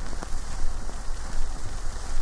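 Steady rain falling, a continuous hiss with a low rumble underneath and a few faint drop knocks.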